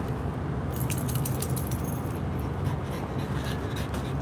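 Small metal pieces jingling in a quick run of light clinks from about a second in, with a few more near the end, over a steady low background rumble.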